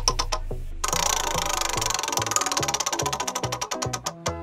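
Spinning prize-wheel sound effect: rapid ticking that starts about a second in and gradually slows as the wheel winds down, over a background music track.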